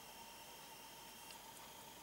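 Near silence: room tone, a faint steady hiss with a thin steady tone.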